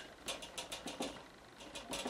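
Painting tool scratching and tapping on watercolour paper while rock marks are laid in: a quick run of short, dry scratchy ticks, with a brief lull before a few more near the end.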